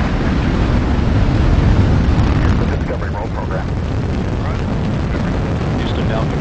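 Space Shuttle launch roar from the rocket engines at liftoff: a loud, steady, deep rumble that eases slightly after about two and a half seconds.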